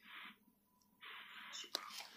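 Steel blade scraping thick callus off the sole of a foot: a short scraping stroke at the start and a longer one about a second in, followed by a couple of faint clicks.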